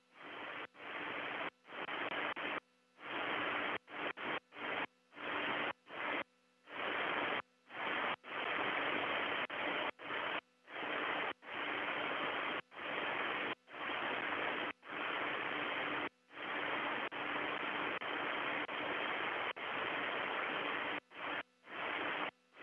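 Radio static from the Soyuz air-to-ground communications link: a band-limited hiss that keeps cutting in and out in irregular bursts, with dead gaps between them and a faint hum underneath.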